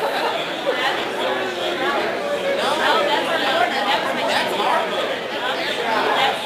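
Audience chatter: many people talking at once, a steady murmur of overlapping voices with no single voice clear.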